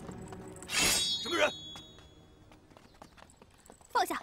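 A sudden metallic clash about a second in, with a high ringing that dies away over about a second, followed at once by a short shouted cry.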